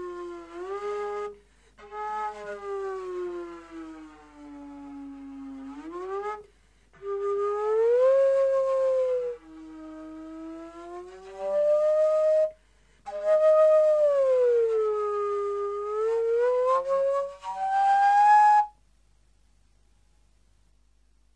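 Vermeulen flute, a straight-blown slide flute, played solo in long tones that slide slowly up and down in pitch, with brief breaks between phrases. The playing stops abruptly shortly before the end.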